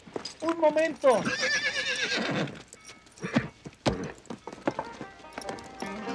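A horse whinnying with a long, quavering call that starts about half a second in, followed by scattered hoof stamps and scuffles on dirt as the horse shies away.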